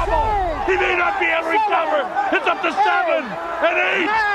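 Excited male voices talking fast over each other, boxing commentary at a knockdown, with wide up-and-down swings in pitch.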